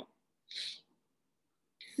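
A brief, soft intake of breath about half a second in, otherwise near silence.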